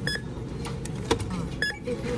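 Self-checkout barcode scanner beeping as items are scanned: two short single-pitch beeps about a second and a half apart, with a few light knocks in between.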